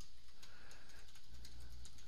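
Computer keyboard keys clicking as a password is typed: a few irregular keystrokes over a low, steady hum.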